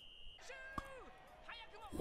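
Faint anime dialogue playing quietly in the background, with a thin steady high tone that stops shortly after the start and a single click near the middle.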